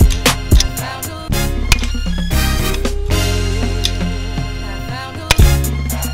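Background music with a steady beat and a bass line, with a short phrase that repeats about every two and a half seconds.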